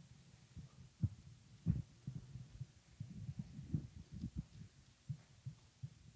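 Microphone handling noise: irregular low thumps and knocks as a lectern microphone is adjusted on its stand and lifted off it, the strongest knocks about one and a half seconds in.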